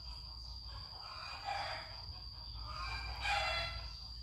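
Two faint bird calls, one about a second in and one near the end, over a steady high-pitched whine.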